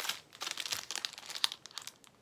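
Small plastic bag of diamond-painting drills crinkling in irregular crackles as it is handled.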